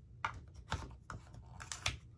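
Small plastic cosmetic pigment jars clicking and tapping as they are handled and taken out of their set: an irregular run of light clicks, several of them close together near the end.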